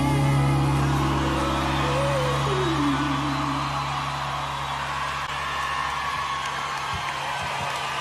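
A live band's final low chord is held and rings out while a festival crowd cheers and whoops. A single voice slides down in pitch early on. The held chord fades away near the end, leaving the cheering.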